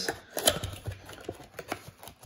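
Fingers prying open the top flap of a cardboard trading-card blaster box: a run of small irregular clicks and scrapes, the sharpest about half a second in.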